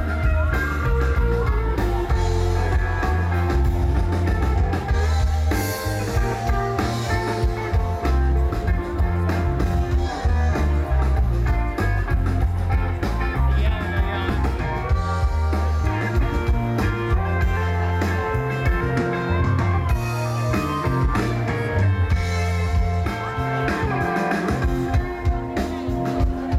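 Live rock band playing: electric guitar, electric bass, keyboards and drum kit, loud and continuous.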